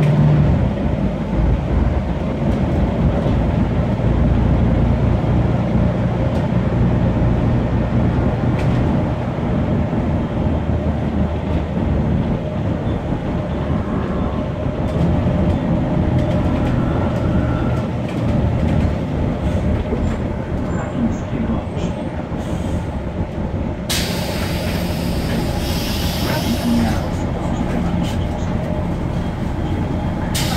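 Volvo 7000A articulated city bus under way, heard from inside the cabin: its Volvo D7C275 six-cylinder diesel and ZF 5HP592 automatic gearbox running steadily, the gearbox much deteriorated by the owner's account. Near the end a loud hiss lasting about five seconds.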